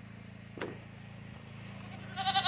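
A faint steady low hum, with one short click a little over half a second in.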